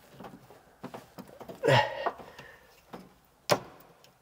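A man's short groan of effort, falling in pitch, about halfway through. Around it are small clicks and knocks of hands working a hydraulic filter loose in a cramped engine bay, with one sharp click near the end.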